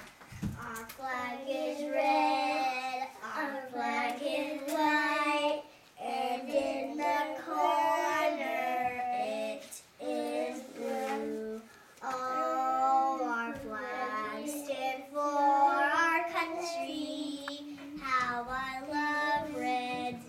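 Young girls singing a patriotic song without accompaniment, in held phrases with short breaks between lines.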